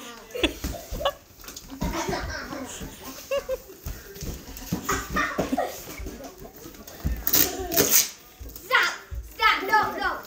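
Children talking and laughing in a small room, with two short, sharp noisy sounds about seven to eight seconds in.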